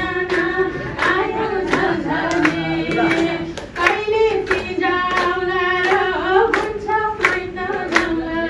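A woman singing a slow song into a microphone, holding long notes, with hands clapping along in a steady beat of about two claps a second.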